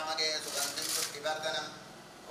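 Metal clinking and jingling, brightest about half a second to a second in, over a chanting voice.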